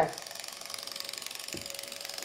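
A remote-controlled toy robot beetle running on a tile floor: its small motor and legs make a rapid, steady mechanical whirr and rattle.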